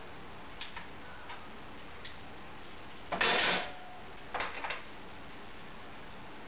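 A few light clicks and taps from hands and tools working on a car's distributor and engine, with a louder half-second burst a little after three seconds and a quick cluster of clicks about a second later.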